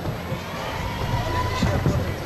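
A gymnast's running footsteps on the vault runway over steady arena crowd noise, getting louder, then a couple of sharp thuds near the end as she hits the springboard and vaulting table in a Yurchenko entry.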